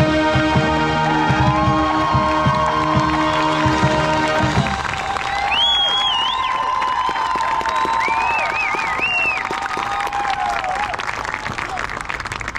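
Marching band's brass and winds holding a loud sustained chord that cuts off about four and a half seconds in, then crowd in the stands cheering and applauding, with whoops and a couple of shrill whistles.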